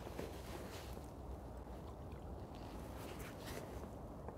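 Quiet outdoor background: a faint, steady low rumble with a few soft ticks.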